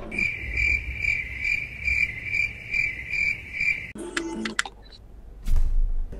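A high, steady chirping sound that pulses about twice a second and stops about four seconds in, followed by a short crackle.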